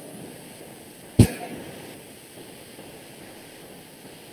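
Low steady hiss from an open video-call microphone, broken once, about a second in, by a single short sharp burst that fades quickly.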